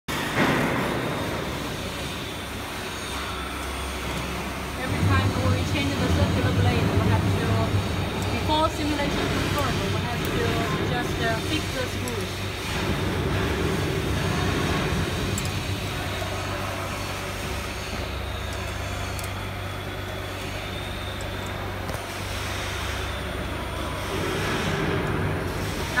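Steady low machine hum that comes in about five seconds in and fades near the end, with voices talking in the background.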